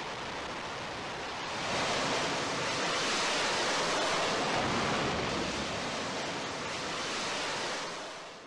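Steady rushing roar of a jet aircraft launching from a carrier deck. It swells about two seconds in and fades away at the end.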